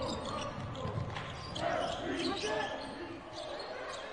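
A basketball being dribbled on a hardwood court, with players' voices calling out faintly.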